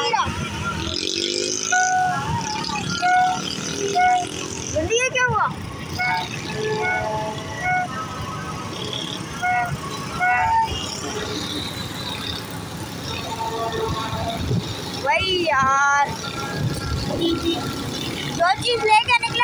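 Horns tooting again and again in short single-note blasts over the steady rumble of motorcycle engines and street traffic. Voices cry out twice in long rising-and-falling calls, about five seconds in and again near the end.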